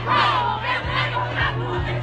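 Loud nightclub music with a heavy bass line, with voices shouting or singing over it.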